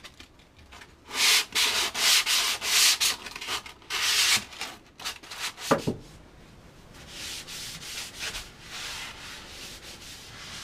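Hand sanding of painted plywood with 120-grit sandpaper to knock down high spots in the first coat of paint. Rapid back-and-forth strokes, about three a second, come loudest over the first few seconds, with a short squeak about halfway through, then lighter sanding.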